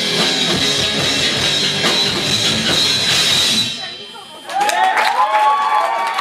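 A live rock band with a drum kit and electric guitar plays the last bars of a song, which stops a little under four seconds in. After a brief lull the audience cheers.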